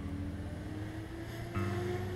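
A motor vehicle's engine hum, one steady tone slowly rising in pitch, with more tones joining near the end, over background music.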